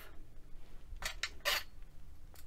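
Two short scraping swishes about a second in, as a long metal clay blade is picked up and handled against a glass work mat.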